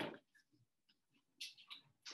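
Faint strokes and squeaks of a dry-erase marker writing on a whiteboard: a sharp click at the start, a few light ticks, then a short run of scratchy strokes about a second and a half in.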